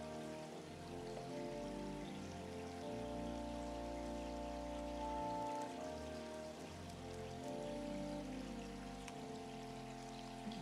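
Organ playing soft sustained chords that change every second or two, the introduction to the responsorial psalm.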